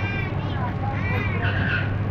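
People's voices with short high-pitched calls, over a steady low hum.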